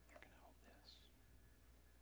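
Near silence, with a faint whispered voice in the first second.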